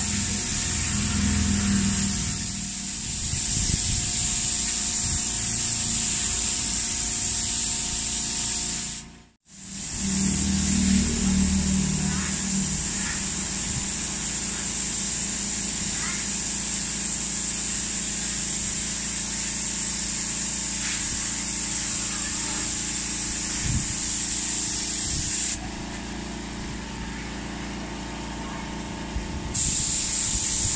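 Gravity-feed spray gun hissing steadily as it sprays primer onto a motorcycle plastic side cover. The hiss cuts out abruptly for a moment about nine seconds in, then carries on, and for a few seconds near the end it is quieter and duller.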